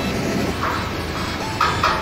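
Diesel engine of a Volvo VM 260 tanker truck running steadily while the truck unloads liquid ammonia into a storage tank, with two brief fainter higher-pitched sounds partway through.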